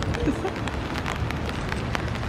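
Steady rain, with many small drops tapping sharply on an umbrella overhead.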